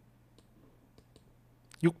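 A few faint, sharp clicks in an otherwise quiet room, spread out over the pause, followed near the end by a man starting to speak.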